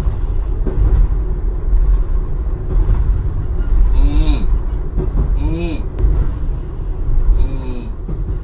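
Steady low rumble of a train carriage in motion, with a cat meowing three times in the second half, each meow a short call that rises and falls in pitch.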